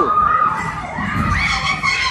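Several children shouting at once, their high voices overlapping, with one held call at the start and more shouts from about a second in.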